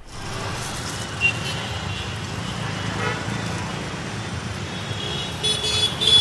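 Road traffic at a busy city intersection: a steady rumble of cars, motorbikes and auto-rickshaws, with a couple of faint horn toots.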